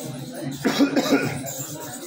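A person in the room coughing: one short burst a little after half a second in, lasting under a second.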